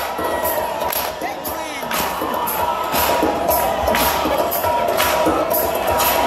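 Dance music played loud over a hall's sound system, with a steady beat of about two strokes a second, and a crowd cheering over it.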